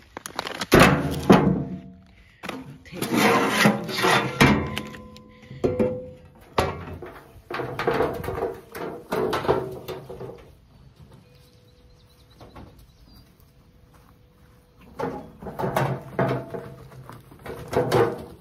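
Shovels knocking and rattling in a plastic wheelbarrow as it is handled and wheeled along, with loud thunks through the first half and again near the end.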